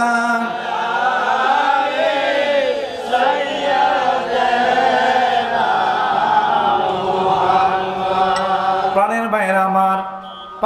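A crowd of men chanting a devotional refrain together in long, drawn-out notes.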